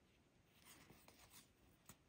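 Near silence with a few faint, soft rustles and ticks of a crocheted piece and its yarn tail being handled.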